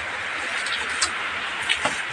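Steady rushing noise of running water, heard from a distance, with a couple of faint ticks about a second in and near the end.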